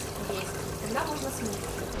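Water trickling and splashing steadily in a small fish tank with a hand dipped into it.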